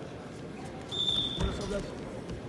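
Murmur of voices in a wrestling hall. About a second in comes a short, shrill whistle lasting about half a second, then a low thud and a louder shout.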